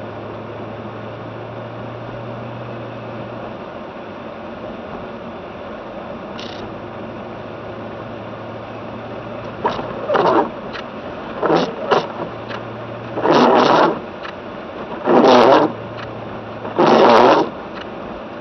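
Car cabin hum of the engine and tyres on a snowy road, with a steady low engine tone. About halfway through, the windshield wipers start sweeping, each pass a loud scrape of the blades across the snow-flecked glass, about one every two seconds.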